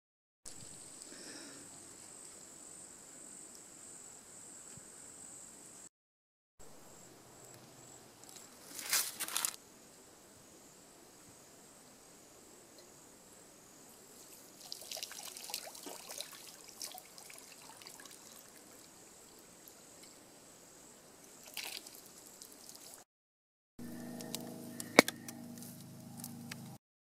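Quiet outdoor ambience in a few cut-together clips, with water sounds: a short louder splash about nine seconds in and scattered trickling later, over a steady high insect buzz in the first clip. A short final clip near the end carries a low steady hum and a sharp click.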